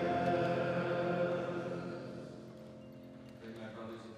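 Closing chord of a hymn sung by the choir or congregation, held steady and then dying away over the second half.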